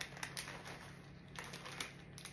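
Small plastic bag of dark chocolate chips crinkling faintly as the chips are shaken out into a hand, with a few light scattered clicks.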